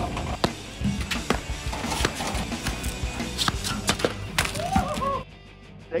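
Platform tennis paddle volleying a ball: a run of sharp, irregular hits, with background music.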